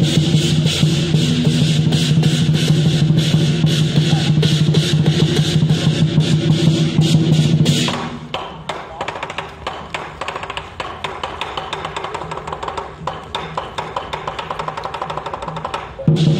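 Percussion music accompanying a dragon dance: rapid drumbeats over a steady low tone. About halfway through it drops suddenly to quieter drumming.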